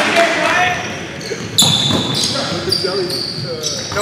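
Pickup basketball game on a hardwood gym floor: the ball bouncing, with players' voices calling out in the hall. From about one and a half seconds in come several short, high-pitched squeaks typical of sneakers on the court.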